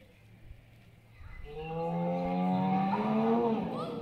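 A recorded dinosaur roar played over a loudspeaker at a life-size sauropod model: one long, low call starting about a second in, slowly rising in pitch and ending with a short upward sweep.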